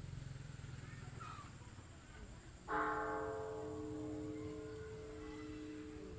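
A large bronze pagoda bell struck once, nearly three seconds in. Its higher overtones die away within a second or two, while the deep tone rings on with a slow pulsing waver.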